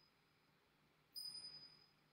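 Tingsha cymbals struck once about a second in, giving a single clear high ring that fades over the following second.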